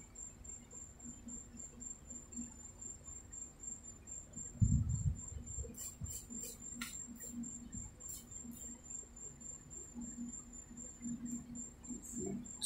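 Faint handling sounds of a hand on a paper scratch-off ticket. There is a low bump about four and a half seconds in, then a few short scratchy strokes over the next few seconds, all over a steady high-pitched whine.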